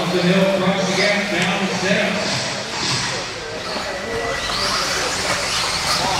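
Electric 1/10-scale 2WD RC buggies racing on an indoor dirt track: the high whine of their motors rises and falls as they accelerate and brake, over a noisy hiss of tyres and the hall.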